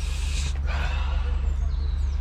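Steady low rumble of wind buffeting the microphone, with a brief rustling hiss about half a second in as the camera is swung around.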